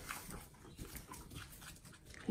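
Faint, irregular sucking and smacking of a newborn animal drinking from a baby bottle.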